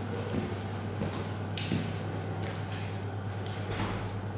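A steady low hum of room tone, with a few faint footsteps and shuffles on the studio floor.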